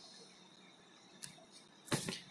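Quiet room tone, broken by a faint tick a little past halfway and a sharper click near the end.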